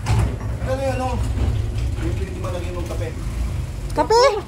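A steady low rumble with faint talking over it.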